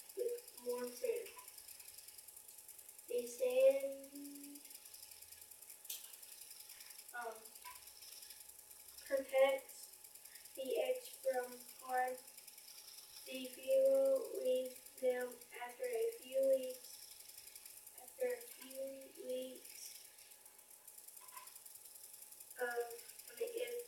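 Quiet, distant speech in short phrases with pauses, heard from across the room: a child reading a text aloud.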